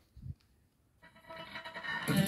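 Panasonic DT505 boombox starting to play a track from a disc: a brief low thump near the start, then music fades in about a second in and grows steadily louder.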